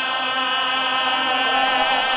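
Men's voices holding one steady drone note in unison: the sustained backing chant that carries under a qasida recitation.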